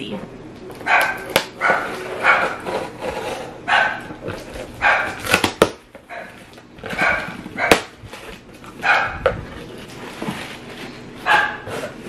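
A dog barking repeatedly: about a dozen short barks with pauses between, and a few sharp clicks among them.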